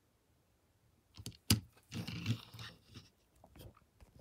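Handling noise as a die-cast model car is moved and set down on a table: a sharp click about a second and a half in, then a brief rustle and a few faint clicks.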